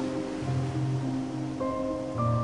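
Soft background music of sustained held notes, changing to new notes about half a second in and again near the end.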